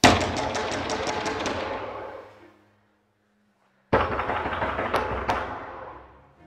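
Two sudden loud crashing hits, like added horror-film sound effects or music stings. The first has a rapid rattle and fades over about two seconds; the second comes after a second of dead silence and has two sharp clicks in it as it fades.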